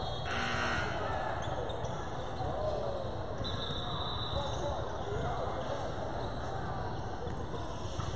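Basketball bouncing on a hardwood court during a game, with voices of players and spectators echoing through a large gym.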